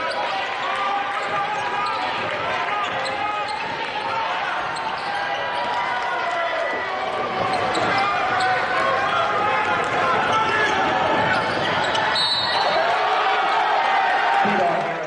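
Live basketball game sound in an arena: many overlapping voices of crowd and players, with a basketball being dribbled on the hardwood court.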